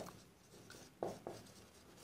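Faint strokes of a felt-tip marker writing on a board, with a few short scratches about a second in.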